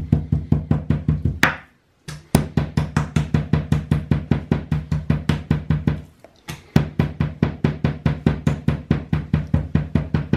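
Kitchen knife chopping rapidly into raw meat on a wooden cutting board to tenderise it, a fast, even run of knocks at about six a second. It stops twice briefly.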